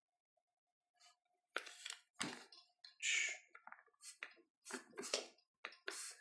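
The folding-stock hinge and B5 Systems Bravo polymer stock of a SIG Sauer MCX Spear LT carbine being worked by hand toward the folded position: a string of light clicks and knocks with a short scrape about three seconds in, starting after a quiet first second and a half.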